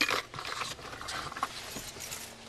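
Rummaging by hand for keys, with rustling and scattered metallic clicks and jingles as the keys shift among other belongings; a sharp knock at the very start is the loudest sound.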